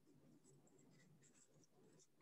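Near silence, with faint scratchy rustling and a few light ticks from yarn and scissors being handled while a pom-pom is cut free.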